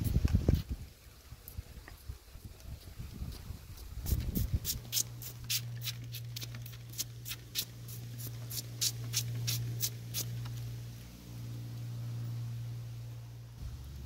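Plastic trigger spray bottle squirting repeatedly, a quick run of short hissing sprays about three a second, as a homemade oil-and-soap mixture is sprayed onto gypsy moth egg masses on a tree trunk. A steady low hum runs beneath the second half.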